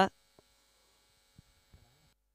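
Near silence on the commentary microphone: a faint steady electrical hum, with a few tiny clicks, just after a word of commentary ends.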